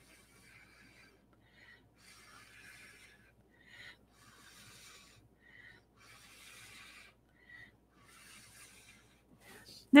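A person blowing through a drinking straw in a series of soft puffs, about half a second to a second each, pushing wet acrylic pour paint across a canvas.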